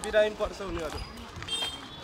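People's voices outdoors, with a loud low thump just after the start and a duller one about a second in. A short high tone sounds near the end.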